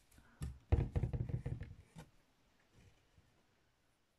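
Hands working a needle and thread through cross-stitch fabric stretched in an embroidery hoop: a light tap, a second or so of close rubbing and rustling of thread on cloth, then another tap.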